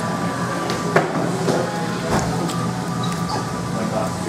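Busy restaurant room sound: a steady hum with faint background music, and one sharp clack about a second in.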